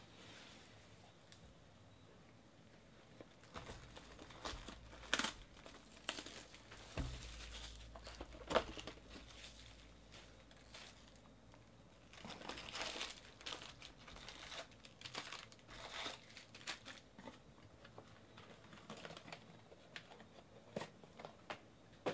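Intermittent crinkling of wrapped trading-card packs and light cardboard knocks as a hobby box is opened and the packs are lifted out and stacked, quiet for the first few seconds.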